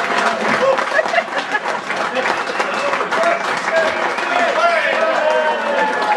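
Audience applauding steadily, with cheers and shouted voices rising over the clapping.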